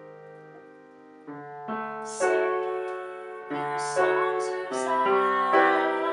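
Acoustic upright piano playing slow, sustained chords, the first fading away before a new chord is struck about a second in and others follow at intervals. From about two seconds in, a woman's voice sings over the piano with a slight waver.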